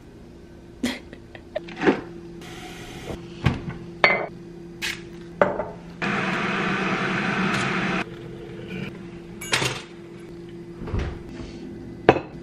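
Kitchen handling sounds: a scatter of knocks, clicks and clinks as things are picked up, set down and cupboards opened, over a steady low hum. A loud rush of noise lasts about two seconds from about six seconds in.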